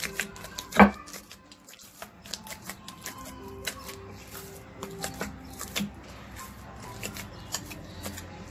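Whole-wheat bread dough kneaded by hand in a terracotta dish: a quick, irregular run of sticky slaps and squelches as the dough is pressed and folded, with one louder smack about a second in. Faint background music plays underneath.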